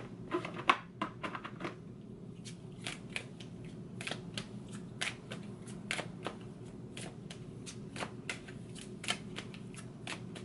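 A deck of oracle cards being shuffled overhand by hand, the cards flicking and slapping together in short irregular clicks: a quick run in the first two seconds, then sparser ones about once or twice a second.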